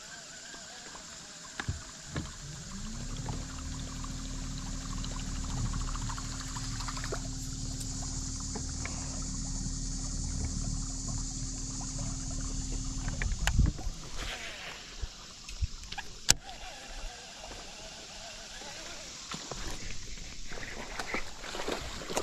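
Bass boat's electric trolling motor running at a steady whine for about ten seconds, rising in pitch as it comes on and then cutting off. A few sharp clicks follow.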